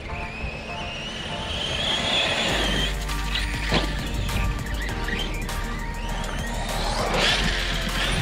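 High whine of an Arrma Kraton 6S BLX RC truck's brushless motor, rising in pitch as the truck accelerates, followed by a couple of sharp knocks as it hits the dirt jumps. Background music plays throughout.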